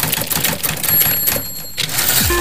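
Typewriter key clicks in quick, irregular succession: a sound effect for title text typing onto the screen letter by letter.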